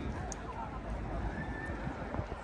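Outdoor ambience: wind rumbling on the microphone, with faint voices of people around.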